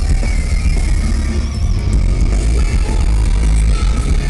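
Live post-hardcore rock band playing loud, heavy on bass and drums, heard from within the crowd.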